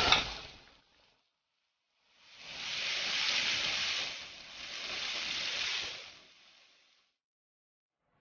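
Green soybeans and sliced chili peppers sizzling in a hot wok as they are stir-fried and tossed, in two swells of about two seconds each.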